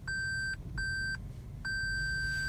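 A Toyota Prius's in-cabin warning beeper sounding while the car is in reverse under parking assist: three high-pitched beeps, the last held longer.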